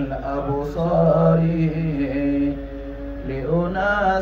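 A man chanting Arabic verse, drawing out long held notes that bend and glide in pitch, between lines of the poem.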